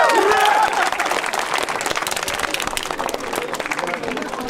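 Crowd applauding after the bout, with a voice shouting in the first second.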